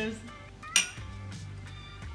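Two stemmed glasses clinking together once in a toast: a single sharp chink with a short ring about three-quarters of a second in, over soft background music.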